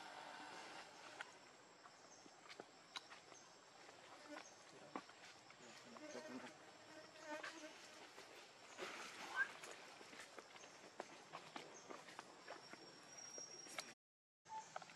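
Faint forest ambience: insects buzzing with a thin steady high tone, and scattered light clicks and ticks.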